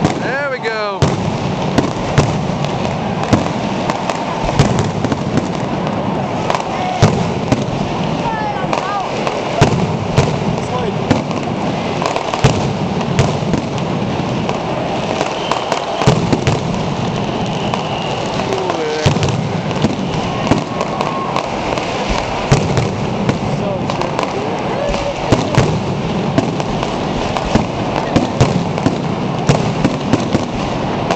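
Dense, continuous fireworks barrage: rapid crackling firecrackers with sharp, louder bangs every second or so, and a few whistling glides from whistling fireworks.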